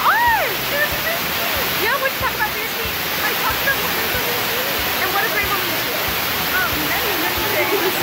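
Blown-out phone microphone audio: a loud, steady rushing hiss with a broken, blocky low rumble, with voices showing faintly through it.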